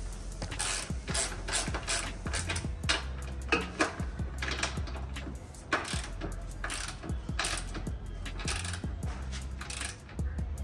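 Repeated ratchet-like metallic clicks, a few a second, from a tool being worked at a motorcycle's rear axle and chain adjuster while the chain tension is set.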